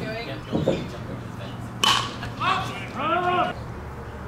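A baseball pitch popping sharply into the catcher's mitt about two seconds in, followed at once by a drawn-out shouted call.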